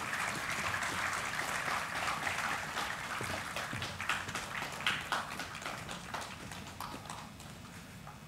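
Audience applauding, many hands clapping at an uneven pace, slowly thinning out toward the end.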